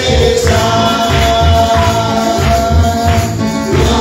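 Spanish gospel praise song: a group of voices singing over a steady bass beat, with a tambourine jingling.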